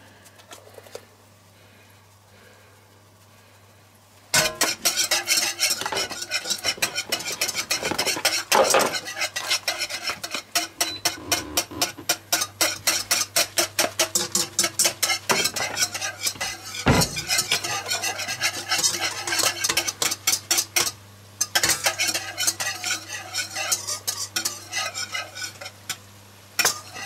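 Wire whisk beating a sauce in a metal wok: fast, rapid clicking and scraping of the wires against the pan, many strokes a second. It starts about four seconds in after a quiet start and stops briefly near the end.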